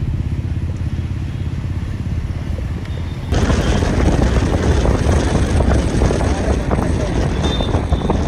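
Road and traffic noise from inside a moving car in busy city traffic: a steady low rumble that turns into louder, busier traffic noise about three seconds in, with a few faint high tones near the end.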